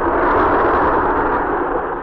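Studio audience laughing, a dense crowd roar that swells just after the start and slowly dies away, heard on a thin old broadcast recording.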